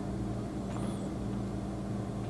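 Steady low background hum with a faint hiss and no speech, with one faint brief high chirp a little under a second in.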